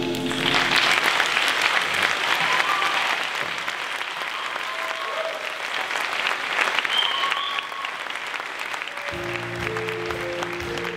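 Audience applauding and cheering, with a few short shouts rising above the clapping. About nine seconds in, instrumental music starts up.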